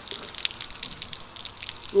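Water from a garden hose spray nozzle pouring onto a man's head and body: a steady hiss of spray with scattered splashes and drips as he scrubs his wet, soapy hair.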